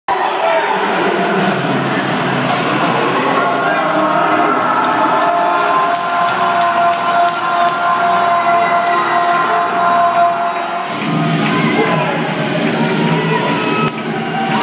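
Arena crowd cheering and shouting at an ice hockey fight, mixed with music, with one note held for several seconds midway.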